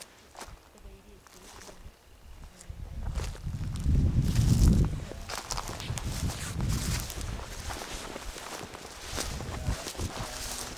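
Footsteps walking through dry grass and forest litter, with a low rumble on the microphone about four seconds in.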